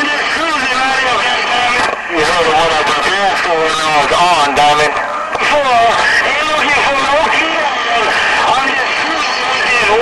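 A voice received over a CB radio transceiver's speaker, with a constant hiss of static beneath it.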